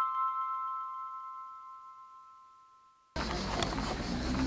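Background music ending on a ringing bell-like chord that fades away to silence. A little after three seconds, street noise cuts in abruptly.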